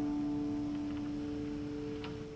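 Final strummed chord of an acoustic guitar ringing out and slowly fading, with a couple of faint ticks.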